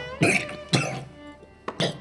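A man coughing three times in short, sharp coughs, over soft background music with bowed strings.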